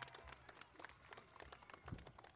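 Near silence with faint, scattered claps at irregular intervals: the tail end of a crowd's applause.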